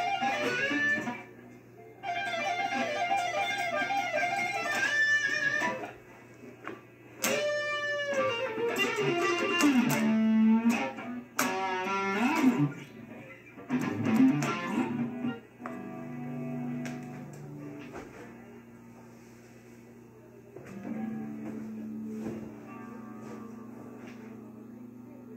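Electric guitar, a homemade Stratocaster-style with a tremolo bridge, played through an amp with some delay: picked lead phrases and chords in bursts with short gaps, a falling pitch glide about seven seconds in, then quieter sustained notes left ringing in the second half. A steady low mains hum sits underneath.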